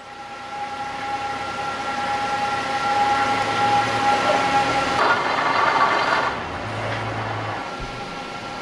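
Machinery running with a steady whine that swells in, turning rougher and noisier about five seconds in before settling.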